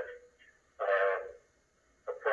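One short spoken word from a recorded courtroom hearing, played back through a computer's speaker, with near silence on either side of it.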